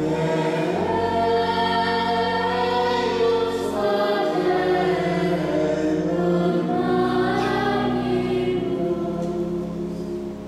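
Church choir singing sacred music in sustained, slowly changing chords, with steady low notes held beneath.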